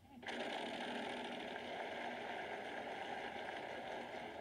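The Wheel of Fortune wheel spinning: the rapid clicking of its pegs against the pointer flapper, a dense steady clatter that starts about a quarter second in and carries on to the end. It is heard through a phone's speaker.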